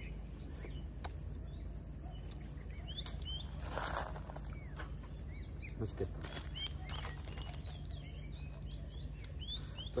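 Small birds chirping repeatedly over a steady low outdoor rumble, with a few sharp clicks and a brief rustle about four seconds in.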